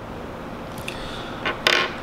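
A few light metallic clicks and taps of a steel bolt and nylock nut being handled and set down on a workbench, about halfway through and near the end, over a low steady background hiss.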